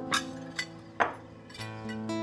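A china plate set down on the table: a few clinks, the loudest about a second in with a short ring, over soft background music of held tones.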